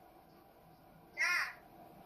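A single short, high-pitched call that rises and falls, about a second in; otherwise near silence.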